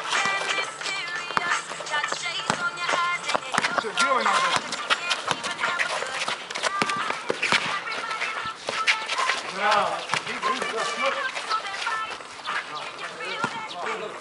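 Music playing together with voices, with short sharp knocks scattered throughout from a basketball game.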